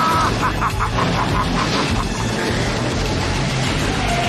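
Film soundtrack mix of score music over a car's low engine rumble. A held high tone at the start breaks into a rapid run of short pulses, about six a second, that stop about two seconds in.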